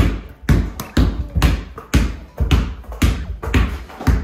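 A basketball dribbled on a wooden floor, bouncing in a steady rhythm about twice a second.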